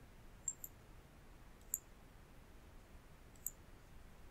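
A few faint computer mouse clicks, one quick pair about half a second in, then single clicks near the middle and near the end, over quiet room tone.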